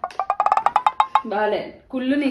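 A quick run of about a dozen wood-block-like percussion taps, about ten a second for just over a second, creeping up slightly in pitch: an edited-in sound effect. A short spoken word follows near the end.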